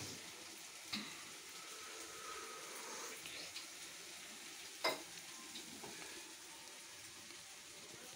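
Chicken frying in a pan with a faint, steady sizzle. Two sharp metal clinks, about a second in and near five seconds, come from steel kitchen containers being handled.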